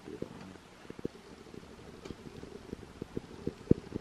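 Irregular soft low knocks and clicks from a hand-held camera being moved about, the loudest a little before the end.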